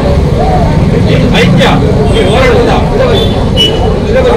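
A man's voice addressing a crowd through a microphone and public-address loudspeaker, over a steady low rumble of street traffic.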